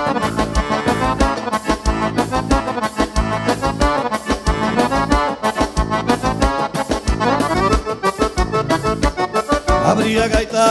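Instrumental passage of live gaúcho dance music, led by a Roland accordion over electric bass and a steady drum beat.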